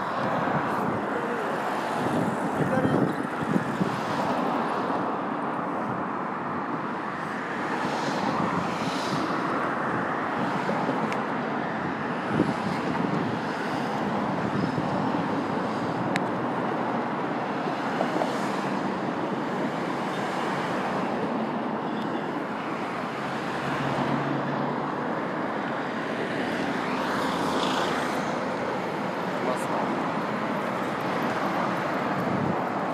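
Steady city road traffic noise, with cars passing, one about eight seconds in and another near the end.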